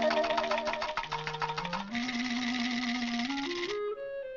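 Cartoon sound effect of a rattle shaking fast, a rapid clicking that thickens into a steady buzz about halfway through and stops just before the end. It stands in for a rattlesnake's rattle. Orchestral cartoon score plays underneath, its bass line climbing in steps.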